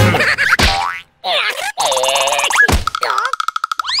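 Cartoon sound track of a larva character's wordless vocal squeals and comic sound effects. After a brief silence about a second in come wavering, bending cries; from about three seconds in there is a steady, rapidly pulsing tone, and a quick rising whistle near the end.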